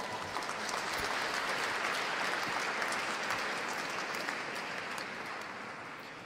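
Audience applauding, building in the first seconds and fading away near the end.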